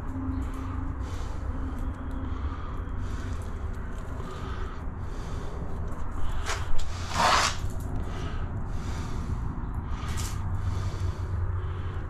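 Gloved fingers rubbing along the wall-to-floor joint of a concrete shower base, smoothing a bead of silicone in soft repeated strokes. There is a louder brushing rustle about seven seconds in, over a steady low hum.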